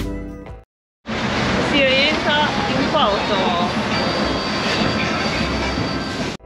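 Slide-guitar background music fades out, then after a moment of silence a small open boat is under way: a steady dense rush of engine, wind and water noise, with people's voices calling out over it about two seconds in.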